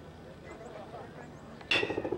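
Low outdoor background with faint, distant voices, broken near the end by a sudden loud voice close to the microphone.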